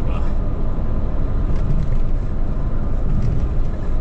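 Heavy truck cruising on the expressway, heard from inside the cab: a steady low drone of engine and road noise.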